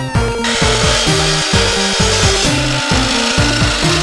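DeWalt miter saw starting about half a second in and running through a cut in a weathered pallet board, over background music with a steady beat.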